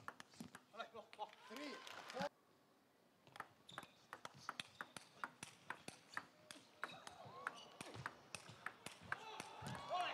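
Table tennis rally: a quick, irregular run of light clicks as the ball is hit by the bats and bounces on the table, starting about three seconds in after faint voices.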